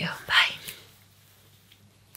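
A woman's voice trailing off, then a short breathy, whisper-like sound about half a second in. After that it falls to quiet room tone.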